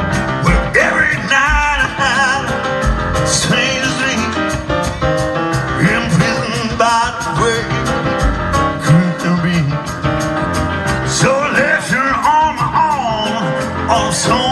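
Live rock band playing an instrumental intro with a steady drum beat: electric guitar, electric bass, drum kit and a Korg CX-3 organ standing in for a Hammond, with wavering lead lines over the groove.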